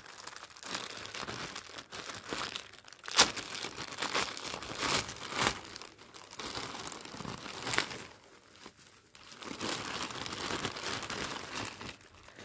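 Plastic courier mailer bag crinkling and tearing as it is pulled open by hand, with a few sharp crackles, the loudest about three seconds in.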